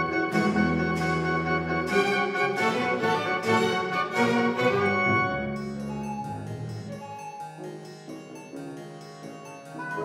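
A double bass concerto played with a baroque orchestra. Bright plucked notes ring over held low string tones, then the texture thins and grows quieter about halfway through.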